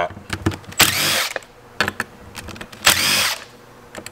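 Cordless drill/driver backing screws out of the top of an Espar D5 heater's housing, running twice for about half a second each time with a whine that rises and falls. Small clicks come between the runs.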